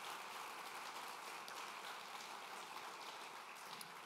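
Audience applauding steadily, dying away near the end.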